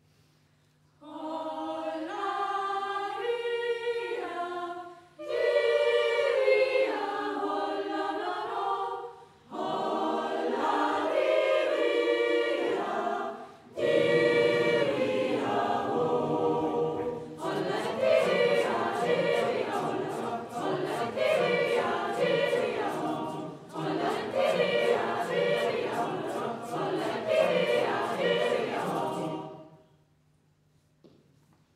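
Mixed youth choir singing without accompaniment, in phrases with short breaks between them. From a little past the middle, a steady beat of sharp clicks runs under the singing until it stops abruptly at the end.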